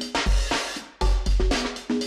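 Addictive Drums 2 software drum kit (Session Percussion kit, Lo-Fi Funk preset) playing a sampled funk percussion groove at 108 bpm. Deep kick drum hits sit under short pitched conga tones and bright cymbal strikes in a repeating pattern.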